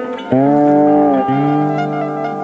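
Electric instruments in a free-form improvised rock jam. A loud, long note swells in about a third of a second in, holds, bends down in pitch and breaks off just past a second, then another long note is held under shifting higher tones.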